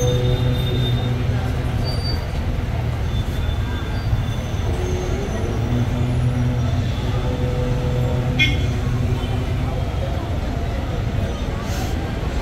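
A steady low mechanical hum, with people talking in the background and a single short click about eight and a half seconds in.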